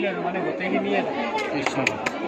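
Several people talking at once: a hubbub of overlapping voices close around.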